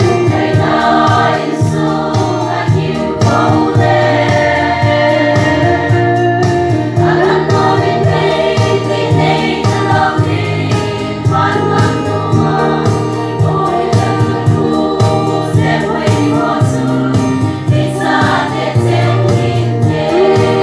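Women's choir singing a gospel hymn together, with a steady beat behind the voices.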